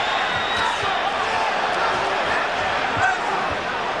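Boxing arena crowd: a steady din of shouting voices, with a few thuds of punches landing.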